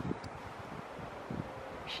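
Wind rumbling against the microphone in uneven low gusts over a faint steady hiss.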